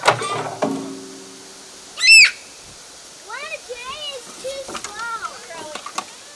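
Young children's voices calling and squealing, with one loud, high-pitched shriek about two seconds in, then a run of short sing-song calls. A wooden knock comes at the very start.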